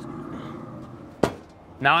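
Metal lid of a Camp Chef SmokePro SG24 pellet grill swung shut, landing with a single sharp clunk a little over a second in.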